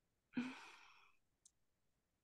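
A woman sighs once, a breathy exhale that starts with a short voiced sound and fades out in under a second. A faint click follows.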